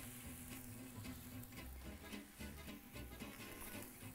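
Faint background music, with a soft sizzle from thin eggplant slices laid on a hot electric grill plate.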